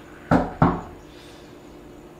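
Two loud knocks on a door, about a third of a second apart.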